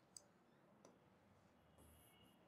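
Near silence, with two faint clicks a little under a second apart: a stylus tapping and writing on a touchscreen whiteboard.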